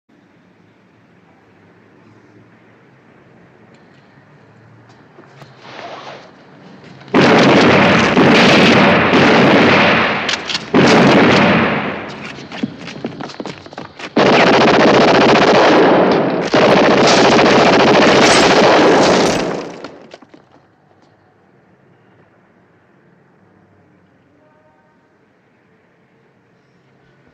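Heavy gunfire in several long, dense volleys between about seven and twenty seconds in, after a quiet start and a single short burst just before. It goes quiet again near the end.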